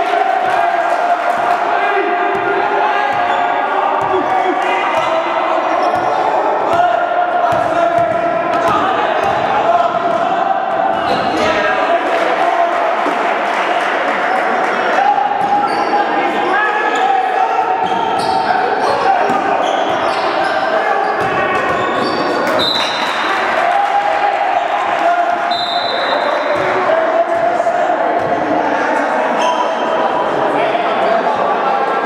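A basketball being dribbled and bounced on a hardwood gym floor during live play, with repeated knocks amid players' and spectators' voices in the hall.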